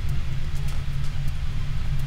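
A steady low rumble, with a few faint ticks over it.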